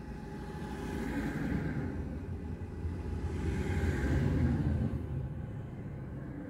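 Road traffic: motor vehicles passing close by on the road, a rumble of engine and tyres that swells twice, first about a second and a half in, then louder about four seconds in, before fading.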